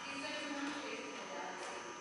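Faint, indistinct voices talking in the background, with no clear words.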